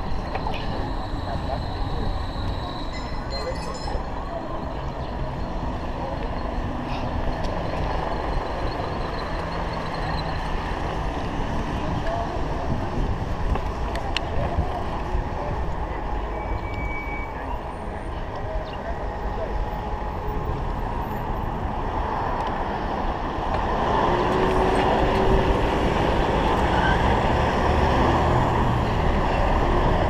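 Steady rumbling ride noise from a chest-mounted action camera on a moving bicycle: wind on the microphone and tyres on the road, with motor traffic around. The noise grows louder over the last few seconds as the bike reaches the main road with vehicles passing.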